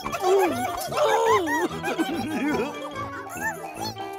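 Bouncy children's cartoon music with a steady beat, under many short high squeaky voices that slide up and down, the sound of small cartoon creatures squeaking and giggling.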